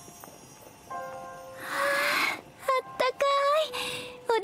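Soft background music with held notes, then a breathy sigh about two seconds in and a girl's voice speaking briefly in an animated Japanese voice-acted scene.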